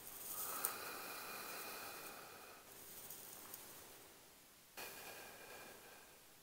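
A person breathing out hard through the mouth while exercising: a long, faint exhale of about two and a half seconds, then another breath near the end.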